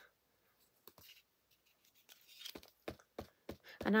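A few light clicks and taps from a clear acrylic stamp block and an ink pad being handled on a craft desk. There is one small cluster of clicks about a second in and a quicker run of them in the second half.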